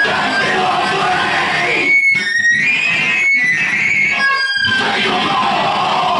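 Live power electronics / harsh noise: a dense, loud wall of distorted electronic noise with a shouted vocal through the microphone. The noise drops out briefly three times in the middle.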